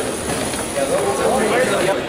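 Crowd chatter: many people talking at once, their voices overlapping in a large room.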